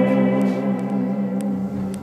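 Electric guitars holding a low chord that rings on and slowly fades, with a few faint clicks.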